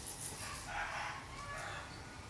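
A faint animal call, about half a second long, starting about half a second in, followed by a shorter call near the end.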